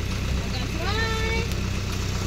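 Pickup truck's engine idling steadily, a low hum heard from its open tray.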